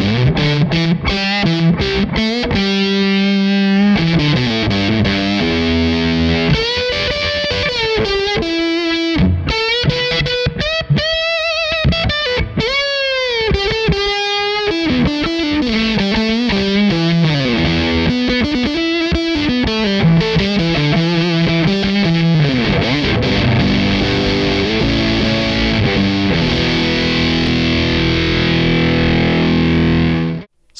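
Single-coil electric guitar played through the Muff-inspired fuzz circuit of a Crazy Tube Circuits Motherload pedal, with thick sustaining distortion. Fuzzed chords ring for the first few seconds, then a single-note lead with string bends and vibrato runs through the middle, and chords return near the end.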